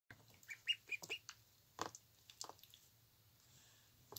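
Ducklings peeping: a quick run of short, high peeps in the first second or so. Then two brief splashes in a shallow tub of water as they paddle and dip.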